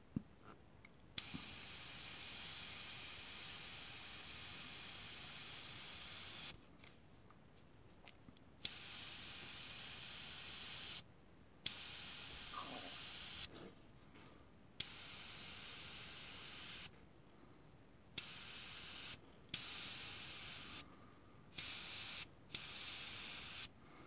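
AK Interactive Basic Line 0.3 mm airbrush spraying paint: a hiss of air through the nozzle that starts and stops sharply as the trigger is pressed and released, about eight times. The first spray lasts about five seconds and the later ones are shorter, the way short detail strokes are laid down.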